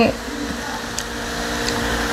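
A steady low machine hum runs under the room, with a few faint clicks about a second in and near the end. It comes right after the tail of a spoken word.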